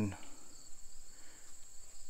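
Insects, likely crickets, chirping in a steady high-pitched chorus that carries on unbroken through the pause in speech.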